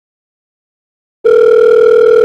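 A loud, steady telephone tone, one held note that starts suddenly a little over a second in.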